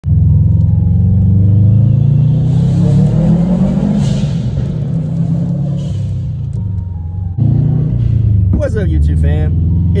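Car engine and road noise heard from inside the cabin while driving. The engine note rises as the car accelerates about two to four seconds in. The sound breaks off abruptly about three-quarters of the way through and then carries on.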